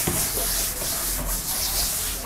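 Cloth duster wiping a chalkboard in repeated back-and-forth swipes, a dry rubbing sound that swells with each stroke.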